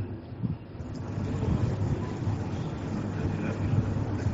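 Steady low-pitched background noise.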